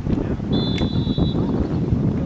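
Wind buffeting the camera microphone: an uneven low rumble. About half a second in, a thin, steady high-pitched tone sounds for nearly a second.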